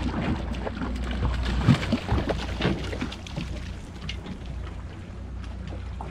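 Wind on the microphone over a steady low rumble, with splashes and sharp knocks in the first half as a small hooked mahi thrashes at the surface beside the boat. The loudest knock comes a little under two seconds in.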